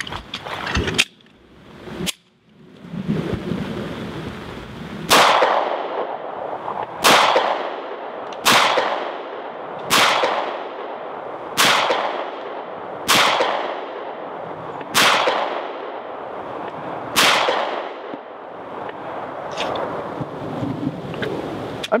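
A .45 ACP Para Ordnance Expert Commander 1911 pistol fired eight times in slow aimed fire, one shot every one and a half to two seconds, each crack trailing off in an echo, over a steady background hiss.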